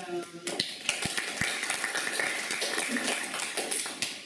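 Audience applauding, starting about half a second in.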